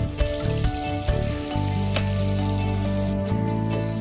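Food sizzling as it fries in a hot pan, a steady hiss, under background music with sustained low notes.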